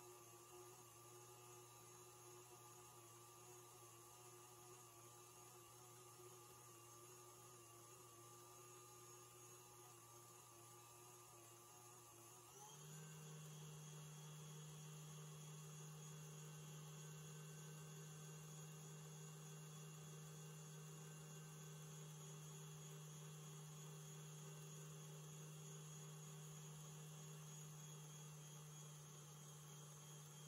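Stand mixer motor humming faintly as its wire whisk beats coffee cream in a steel bowl. The steady low hum steps up in pitch and gets a little louder about twelve seconds in, then holds steady.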